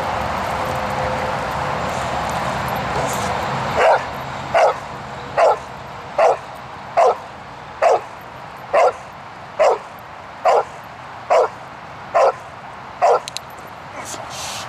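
Dog barking in a steady rhythm at a stationary decoy in a bark-and-hold exercise: about a dozen barks, one every 0.8 seconds or so, starting about four seconds in after a stretch of steady noise.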